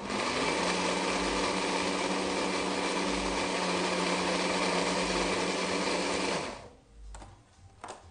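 Hand-held stick blender running at a steady speed in a tall jar, blitzing chimichurri herbs and vinegar to a fine mince. It switches on at the start and cuts off after about six and a half seconds.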